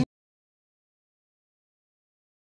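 Digital silence: the sound cuts off abruptly at the start and nothing at all is heard after.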